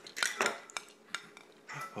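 Hanging plastic toys on a baby bouncer seat's toy bar clacking as a baby bats at them: four or so sharp clicks in the first second or so.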